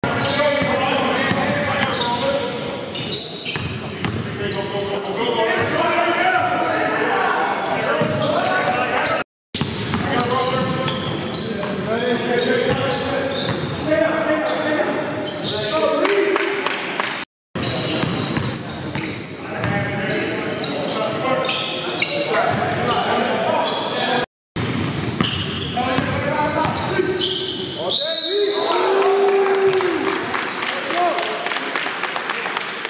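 Live sound of a basketball game in a gymnasium: the ball bouncing on the hardwood court amid players' voices, echoing in the hall. The sound cuts out abruptly three times, at about 9, 17 and 24 seconds.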